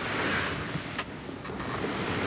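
Soft, steady rushing noise like wind, swelling and easing, with a light click about a second in.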